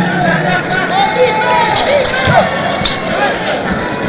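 Basketball game sound on a hardwood court: many short sneaker squeaks and the ball bouncing, over steady arena crowd noise.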